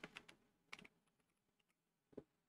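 Faint typing on a computer keyboard: a quick run of keystrokes at the start and a second short run a little under a second in.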